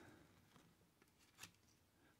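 Near silence, with one faint short click about one and a half seconds in as a trading card is slid off the stack by hand.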